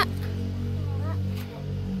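Soft background music with low sustained notes, and a faint voice about a second in.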